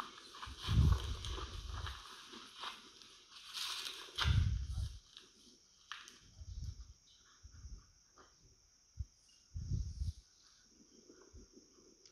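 Wind gusting on the microphone in several irregular low rumbles, with faint crackling rustle of dry grass as someone walks through it.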